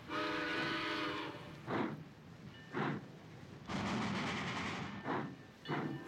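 Cartoon steam locomotive sound effects as the train pulls out: one whistle blast lasting about a second, then a few separate steam puffs and a longer rush of steam about two-thirds of the way through.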